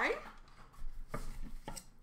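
Hinged wooden presentation box being opened by hand: two light wooden knocks about a second in, the second a little under a second after the first, as the lid swings up.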